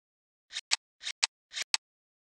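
A presentation sound effect: three quick swish-and-click pairs, about half a second apart, like snips of scissors.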